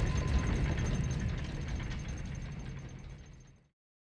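A deep low rumble from a film soundtrack, with a faint high pulsing tone above it, fading out to silence shortly before the end.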